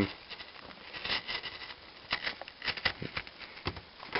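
Utility knife blade cutting through cardboard: a series of short, irregular scratchy strokes.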